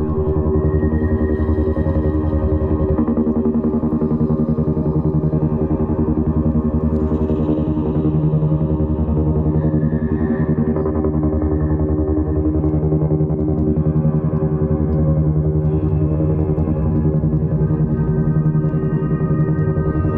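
Pythagorean monochord, its strings played by hand into one steady, dense drone on a single low note.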